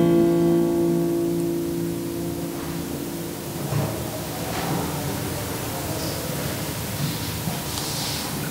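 The last acoustic guitar chord of a hymn rings out and fades away over the first three seconds or so. Then there is faint room noise with a few soft knocks and rustles.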